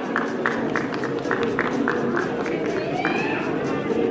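Background music and crowd chatter in a hall, with a quick run of short clicks through the first three seconds.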